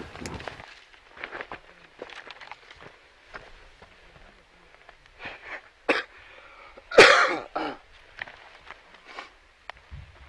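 Footsteps and brush rustling on a rocky, grassy slope, scattered short scuffs and clicks, with a loud short burst like a cough about seven seconds in and a shorter one right after.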